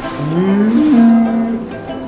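A man imitating a cow's moo with his voice: one drawn-out 'eum-meh' that rises in pitch, then holds steady for about a second.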